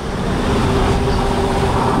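Steady traffic noise with a motor vehicle running, growing louder just after the start and then holding steady.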